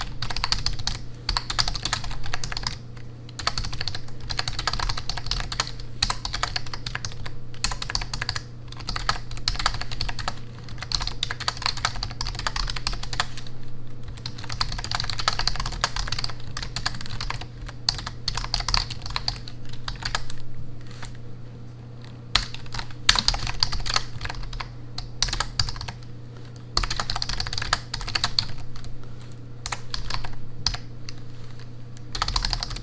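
Fast typing on a backlit computer keyboard: quick runs of key clicks, broken by short pauses every few seconds.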